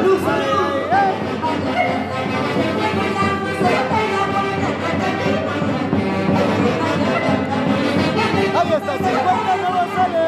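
A live band of saxophones and violin playing, with people's voices talking over the music.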